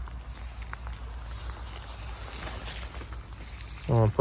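Faint rustling and small crackles of dry pine needles and moss as a hand picks chanterelle mushrooms from the forest floor, over a low steady rumble.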